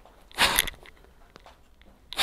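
One short, forceful breath through the mouth about half a second in, the rush of air of a squat repetition timed to the breath as the body rises from the squat. A couple of faint ticks follow.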